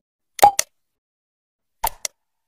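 Computer mouse-click sound effects with a short pop: a quick pair of clicks about half a second in, then another click near the end.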